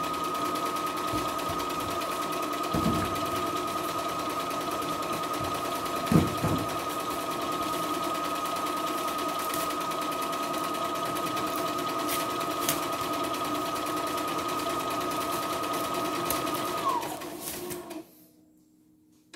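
CNY E960 computerised sewing and embroidery machine running steadily, stitching a programmed pattern on felt with an even motor whine, with two brief thumps in the first few seconds. About a second before the end the whine glides down and the machine stops by itself as it finishes the pattern.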